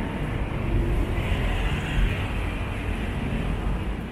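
Steady city street traffic noise: a continuous low rumble of passing cars and motor scooters.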